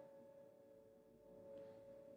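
Near silence, with faint steady sustained tones of soft background meditation music, like a held singing-bowl drone.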